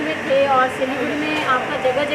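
People speaking, unrecognised talk that runs into a reporter's question, over a steady rushing background noise.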